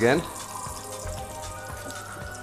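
Hot oil sizzling faintly and steadily in a frying pan after the lamb has been lifted out, with soft background music underneath.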